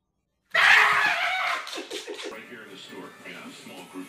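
About half a second of silence, then a sudden loud burst of a person's voice like a scream, fading into quieter voices.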